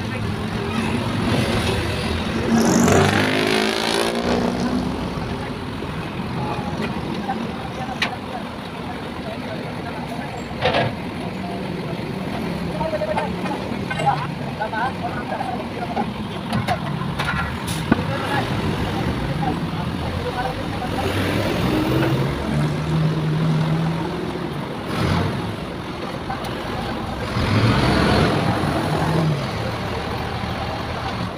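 Diesel truck engine running steadily, with vehicles passing on the road, louder about three seconds in and again near the end, and a few sharp clicks.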